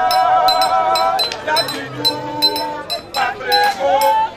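A group of voices singing a traditional Togolese festival song, holding long notes, over a high clinking percussion beat struck in pairs about twice a second.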